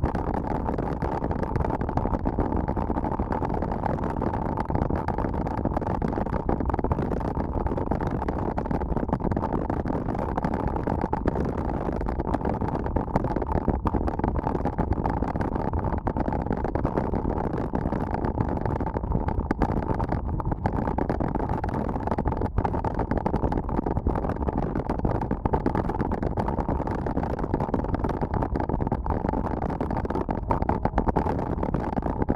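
Steady wind noise on an action camera's microphone, with the rumble of mountain-bike tyres rolling fast over a gravel road.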